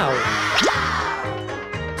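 Background music with an added cartoon sound effect: a long swishing sweep with a short rising bloop a little after halfway through.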